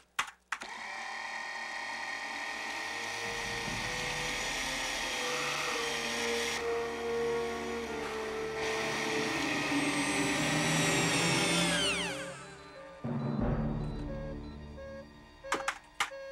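Electric robotic assembly machine starting with a clunk and running with a steady whine and low hum that slowly grows louder. About twelve seconds in, its pitch falls away sharply as it winds down: the machine is jamming. Film score plays underneath.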